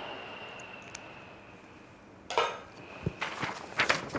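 A felt-tip marker scratching on paper, fading out in the first second, then sheets of paper being handled: one sharp rustle a little past two seconds in and a few lighter rustles and taps near the end as the sheets are lifted.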